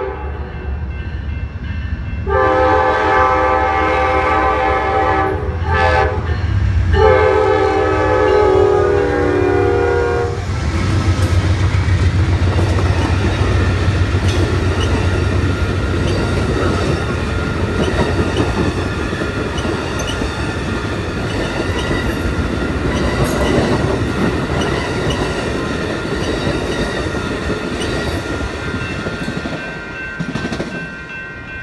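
An Amtrak P42DC diesel locomotive horn sounds a long blast, a short one and a final long blast, finishing the grade-crossing warning. The train then passes close by, with the engine rumbling and the wheels of the bi-level Superliner cars clicking steadily over the rail joints.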